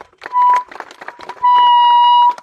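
Handheld megaphone giving out a loud, steady high tone twice, a short one and then a longer one of nearly a second, with handling clicks between, as it changes hands.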